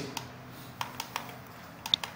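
About five light, scattered clicks from a computer's controls (mouse and keyboard) as a 3D model view is being worked on.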